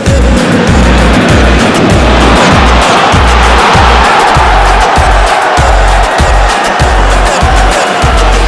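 Loud background music: a beat with heavy bass hits under a dense, noisy layer that fills the upper range.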